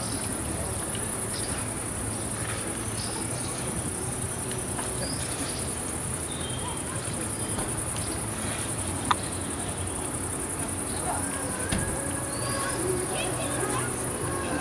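Crickets chirring in a steady, high-pitched band, with faint scattered chirps over low outdoor background noise and one sharp click about nine seconds in.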